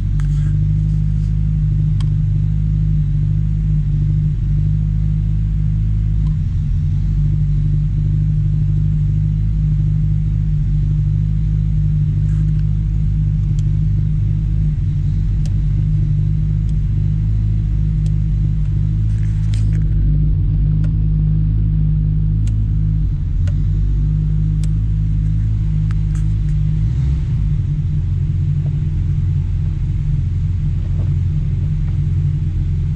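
1948 Chrysler Town & Country's straight-eight engine idling steadily at an even pitch, heard from inside the cabin. A few faint clicks come and go over it.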